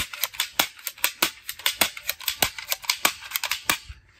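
Plastic toy MP7 submachine gun clicking rapidly as it is fired, about five or six sharp clicks a second, stopping just before the end.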